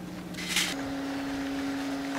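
A steady mechanical hum that steps up to a higher pitch a little under a second in, just after a short hiss.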